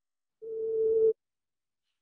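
A single steady tone from the soundtrack of a streamed exhibition teaser video, swelling in for under a second and then cutting off suddenly as the stalling playback drops out.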